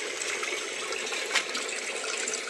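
Steady running water in a backyard aquaponics system, with water flowing and splashing from PVC pipes into the plastic tanks.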